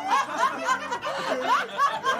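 People laughing, several voices overlapping in quick ha-ha pulses, about four or five a second.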